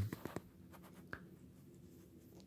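A quiet pause with a few faint clicks and light scratching, the clicks mostly in the first half-second and one more about a second in.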